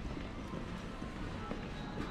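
Footsteps on a hard tiled floor in a busy indoor shopping arcade, with voices and faint background music.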